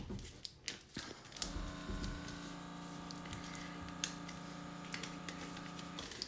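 Quiet clicks and crackles of transfer tape being peeled slowly off thick Smart Vinyl backing. A steady hum starts about one and a half seconds in and stops just before the end.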